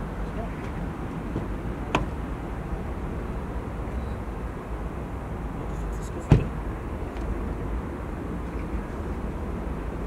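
Steady outdoor rumble of vehicles and traffic around a car park. Two sharp knocks cut through it, a light one about two seconds in and a louder one a little after six seconds.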